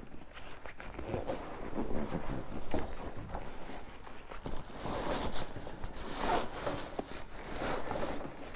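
Nylon fabric of a stuffed backpack rustling and scraping in irregular bursts as gear is pushed and slid into its top compartment.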